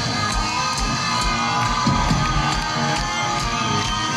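A rock band playing live at full volume, with distorted electric guitar, keyboards and a steady drumbeat, while a crowd cheers.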